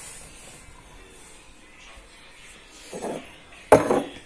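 Cloth wiping a kitchen countertop, quiet, then a single sharp knock near the end.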